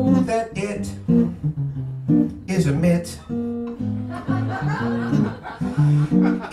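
Acoustic guitar played in a steady accompaniment while a man sings a comic song in a puppet's voice, the vocal phrases coming and going over the guitar.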